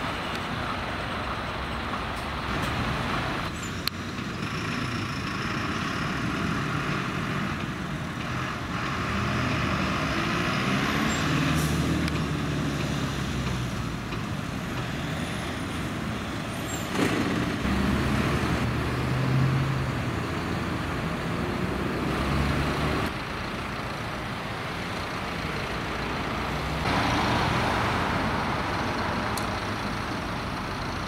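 A flatbed tow truck's engine running amid passing road traffic, with a sharp click about four seconds in.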